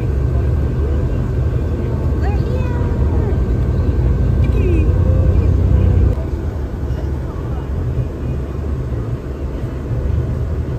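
Inside a Mears Connect motorcoach: steady engine and road rumble at speed, easing off about six seconds in as the bus slows. Faint passenger chatter runs underneath.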